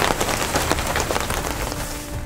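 Steady rain falling, a dense, even pattering of drops.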